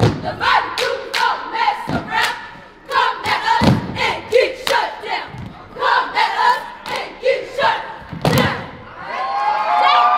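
A cheerleading squad shouting a chant in unison, punctuated by sharp stomps and claps on a wooden gym floor. Near the end the voices hold a long, drawn-out call.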